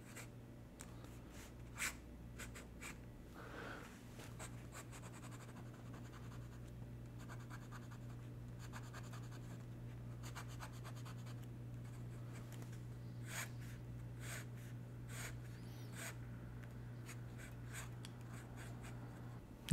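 Esterbrook Estie fountain pen nib scratching faintly across sketchbook paper in a run of short strokes and quick scribbled hatching, with a few louder scratches among them, over a steady low hum.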